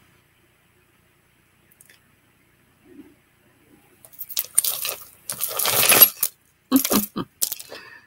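Loose costume jewellery — metal chains and beads — clinking and rattling in a woven basket as hands rummage through the heap, a loud burst of about two seconds starting about halfway through, followed by a few lighter clinks.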